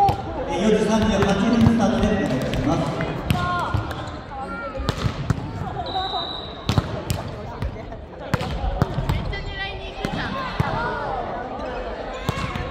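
Players' voices talking across a large, echoing gymnasium, with scattered thuds of balls bouncing on the wooden court floor.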